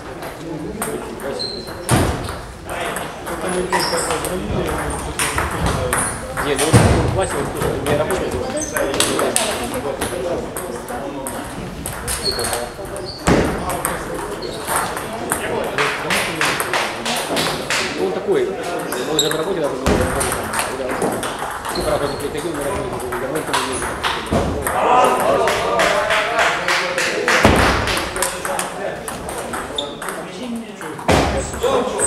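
Table tennis balls clicking off bats and the table in rallies, many quick ticks through the whole stretch. People talk steadily in the background.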